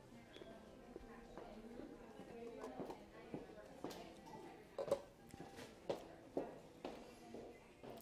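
Faint murmur of distant voices talking in a large room, with a few light taps and clicks in the second half.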